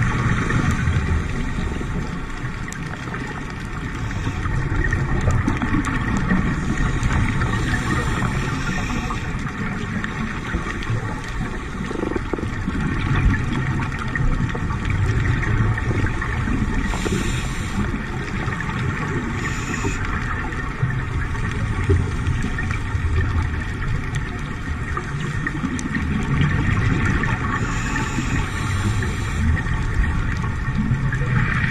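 Underwater ambience picked up by a dive camera: a steady low rumble and hiss, with a few brief brighter bursts along the way.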